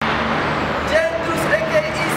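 Steady road traffic noise with indistinct voices, starting suddenly.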